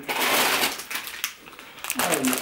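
Plastic grocery packaging crinkling and rustling as it is handled, densest in the first half second, then two sharper crackles later on.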